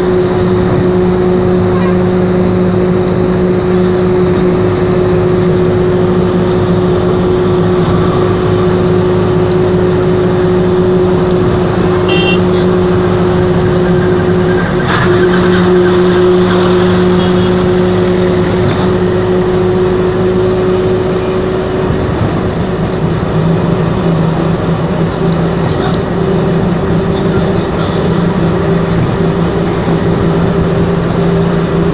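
Road noise heard from inside a moving vehicle: a steady engine drone with tyre and wind noise. A truck passes close alongside about halfway through, briefly raising the noise, and the drone shifts pitch a little later on.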